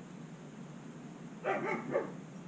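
A brief vocal call, about half a second long, about a second and a half in, over a steady low background hum.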